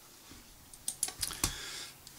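Computer keyboard keys pressed: a quick run of about five light clicks a second or so in, then faint room noise.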